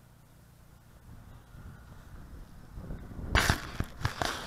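Footsteps in dry grass coming closer, then loud rustling and knocks right at the microphone a little over three seconds in, as something is put down or handled beside it.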